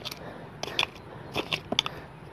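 Loose soil being dug and scraped with a curved hand sickle at the base of a post: a handful of short, irregular crunching scrapes.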